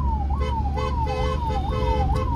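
Ambulance's electronic siren sounding in a fast repeating sweep, about two cycles a second, each rising quickly and falling back more slowly. It is heard from inside the moving ambulance's cab, with a low engine and road rumble underneath.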